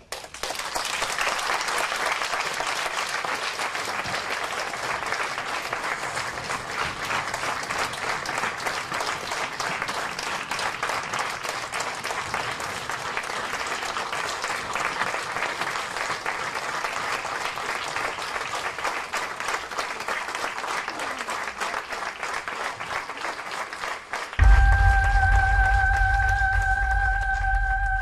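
Audience applauding steadily for a long stretch. About four seconds before the end the applause cuts off and music comes in with a deep bass and long held notes.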